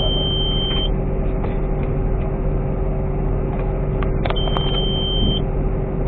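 Steady drone of a farm harvest machine's engine and drive, heard from inside the cab, with a constant mid-pitched whine. A high electronic beep of about a second sounds right at the start and again after about four seconds, with a few sharp clicks just before the second beep.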